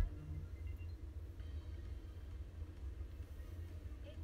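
Quiet room tone with a steady low hum, and one brief click right at the start.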